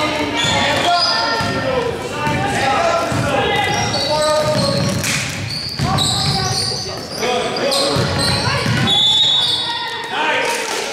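A basketball dribbling on a hardwood gym floor, with voices calling out over it and the sound echoing in the large gym.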